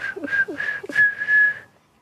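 A young girl whistling through pursed lips: a few short notes at nearly the same pitch, then a longer held note that stops shortly before the end.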